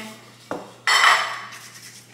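A dark metal muffin pan set down on a hard countertop: a light knock, then a louder clatter about a second in that rings briefly as it dies away.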